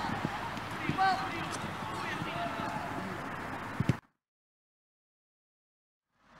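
Sideline sound of a youth football match: distant shouts of players and spectators over a steady outdoor background, with two sharp knocks just before the sound cuts out. The last two seconds are complete silence.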